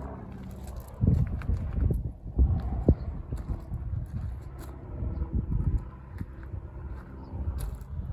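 Footsteps on a gravel lot, irregular crunches and knocks over a low rumble of handling noise on a handheld phone's microphone.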